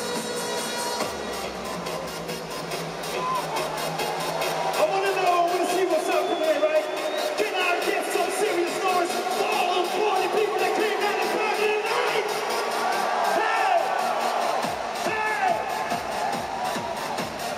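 Electronic dance music over a PA in a stadium, with the deep bass and kick dropped out for a breakdown while a large crowd cheers and whoops. The bass comes back in near the end.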